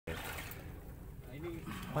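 A quiet low background rumble with faint distant voices, then a man starts speaking loudly right at the end.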